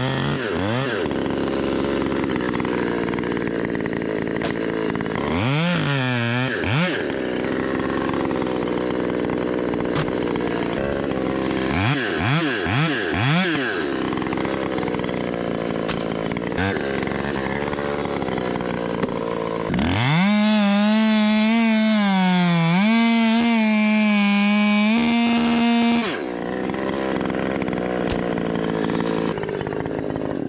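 Chainsaw idling and revving up several times, then running at high speed for about six seconds from about twenty seconds in before dropping back to idle. It is cutting a maple limb down in chunks up in the tree.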